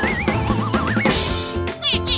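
Cartoon sound effects over children's background music: a wobbling tone that slides upward twice, then a short whoosh about a second in.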